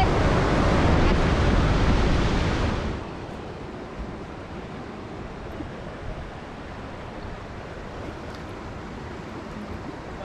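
Waterfall water rushing, loud and steady, cutting off suddenly about three seconds in to a faint, steady outdoor hiss.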